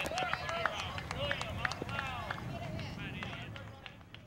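Young players' voices shouting and calling across the ball field, high-pitched and distant, with a few sharp clicks mixed in; the voices fade towards the end.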